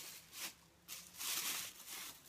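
Shopping bags and packaging rustling in a few short bursts as someone rummages through them by hand.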